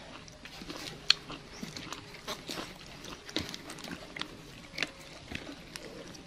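A young monkey eating boiled corn kernels from a hand: scattered small wet clicks and smacks of biting and chewing, with one sharper click about a second in.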